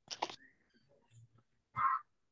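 A dog barks once, short and sharp, near the end, after a few faint clicks and rustles.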